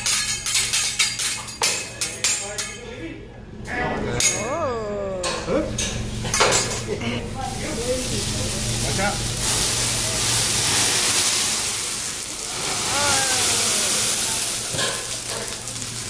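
A hibachi chef's metal spatula clicking and clattering on a steel teppanyaki griddle for the first few seconds. From about halfway in, oil squirted onto the hot griddle sizzles loudly and steadily.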